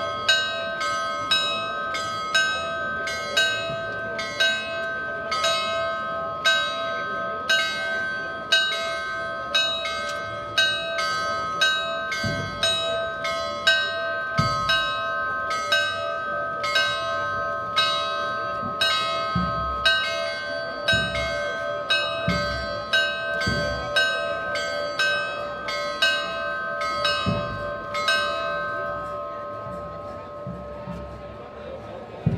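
Church bells pealing: several bells struck in a rapid, continuous festive ring of a few strokes a second, stopping near the end. A few dull low thumps sound over the ringing in the second half.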